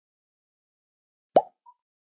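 A single water-drop plop sound effect about one and a half seconds in: a short bloop that rises in pitch, followed by a brief faint high note.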